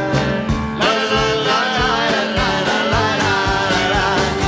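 A band playing live: a man singing over acoustic guitar and electronic keyboard, with a steady low beat underneath.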